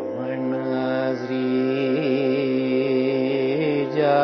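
Carnatic vocal music in raga Suddha Simantini: a voice holds a long sung note that wavers in small gamaka oscillations a few times, over a steady drone.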